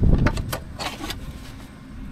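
A flat drill inspection gauge tossed into a hard plastic case: a low thump as it lands, then a few light clicks and rattles.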